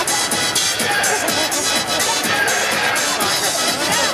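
Music playing over a ballpark's public-address speakers, with crowd chatter from the stands underneath.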